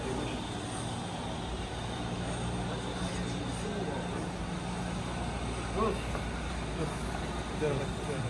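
Steady low mechanical hum filling a large roofed ballpark, with faint voices of people talking in the background, a little more prominent near the end.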